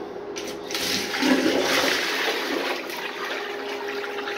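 Handmade miniature model of a 1983 Norris wall-hung toilet flushing: water rushes into the small bowl about half a second in and swirls down the drain, slowly easing off. By the maker's own account it is a bit weak, without enough suction.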